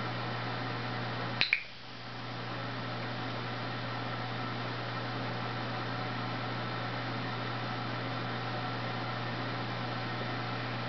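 A dog-training clicker clicks about a second and a half in, a sharp double snap close together, over a steady low hum and hiss.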